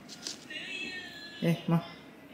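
Clear plastic acetate collar being peeled off a frosted layer cake, squeaking in a high, thin tone for about a second, starting half a second in.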